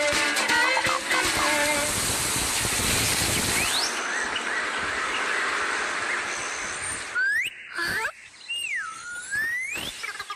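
Cartoon soundtrack: the music ends about a second and a half in and gives way to a long rushing, hissing noise. From about seven seconds in, several squeaky whistle-like glides slide up and down in pitch.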